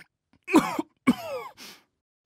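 A man coughing twice, acted coughs for someone with a cold, followed by a short breathy sound.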